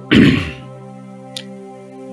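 A man briefly clears his throat at the start, over steady background music of held notes; the music carries on alone after that.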